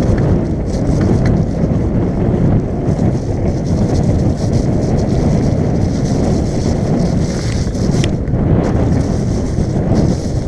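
Mountain bike descending a wet, muddy trail at speed: steady wind buffeting on the camera microphone over the tyres' rumble through mud, with a few sharp knocks from the bike over rough ground.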